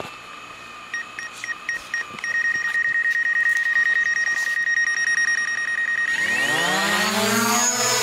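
DJI Mavic Pro quadcopter starting up for take-off: a few short beeps, then its motors spinning at idle with a steady high whine. Over the last two seconds the whine rises as the propellers spool up and the drone lifts off.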